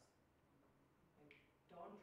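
Near silence in a pause of a woman's talk, with a short click at the start and a brief hiss about a second in; her speech resumes near the end.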